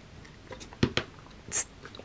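A few light taps and a short rustle as hands shift a steel ruler and a stack of paper on a cutting mat.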